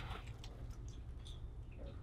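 Faint, scattered clicks of plastic 3x3 speedcubes being handled and turned, over a low steady room hum.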